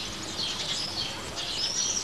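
Songbirds chirping in quick high notes over a steady background haze, with one longer whistled note near the end.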